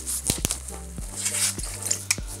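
Plastic bubble-wrap packaging crinkling and rustling in the hands as a part is unwrapped, with a few sharp crackles.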